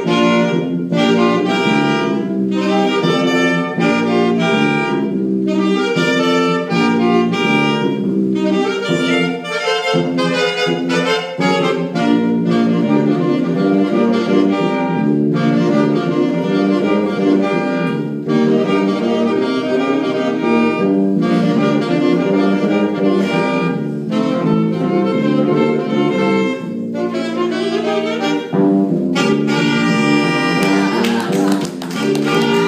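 Saxophone ensemble playing live, several saxophones in harmony with sustained chords and moving lines, continuous in phrases a few seconds long.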